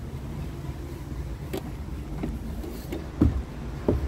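Diesel truck engine idling in a steady low hum, with a few short knocks and bumps. The two loudest knocks come about three seconds in and near the end.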